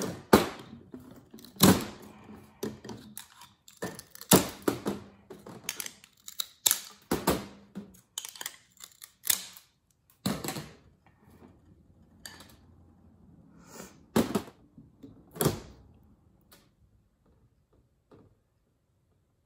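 Scissors snipping the excess off wooden candle wicks, mixed with glass candle jars knocking on a stainless steel table: a series of sharp, separate clicks and knocks that stops near the end.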